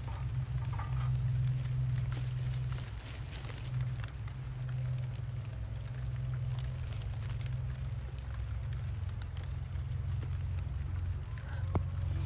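Outdoor background with a steady low rumble and light, scattered crackling, typical of a handheld phone being moved over garden plants.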